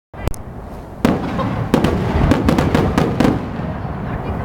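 Aerial fireworks shells bursting overhead: a pair of sharp bangs at the start, then a rapid string of about ten cracks from about a second in, over a low rolling rumble.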